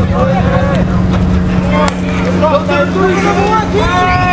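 Scattered shouts and calls from players and sideline voices at a football game, over a steady low hum that fades out about three seconds in.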